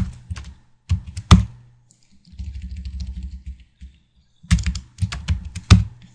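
Typing on a computer keyboard: clusters of sharp keystrokes about a second in and again near the end, with lighter, quicker tapping in between.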